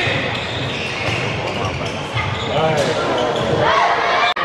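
A handball being dribbled on an indoor court floor during play, with players' voices calling out over it.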